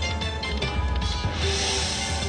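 Dragon Link slot machine playing its free-game music, steady tones over a low beat, while the reels spin; a rushing hiss swells about a second and a half in.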